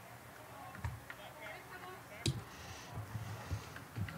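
Faint background of distant voices with a few scattered light clicks and knocks, one sharper knock a little past halfway.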